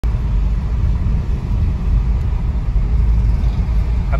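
Steady low rumble of road and engine noise inside the cabin of a moving Mahindra XUV300.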